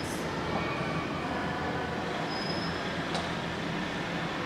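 Steady background noise: a continuous hum and hiss with no clear events.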